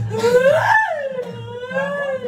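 A woman wailing in a high voice: one sharp cry that rises and then falls in pitch about half a second in, running into a longer drawn-out wail.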